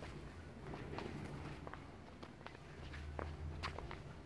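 Faint footsteps on a tiled floor: a few soft, irregular steps over a low steady rumble.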